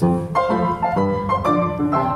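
Upright piano played four hands, a steady run of struck chords and notes.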